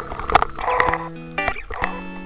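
Background music: held pitched notes that change every half second or so, with a few sharp percussive hits.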